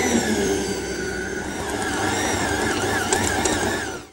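Kenwood stand mixer running at low speed, its flat beater working flour into a stiff butter-cookie dough: a steady motor hum with a faint wavering whine, falling away a little near the end.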